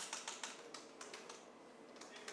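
Laptop keyboard: a quick run of faint keystrokes as a short command is typed, thinning out after about a second.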